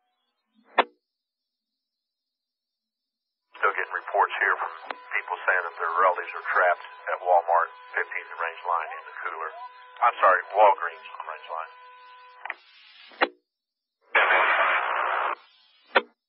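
Two-way emergency radio: a key-up click, then a thin, band-limited voice transmission with a steady whistle-like tone running under it, which the recogniser could not make out. A click ends the transmission, and about a second of radio static follows near the end.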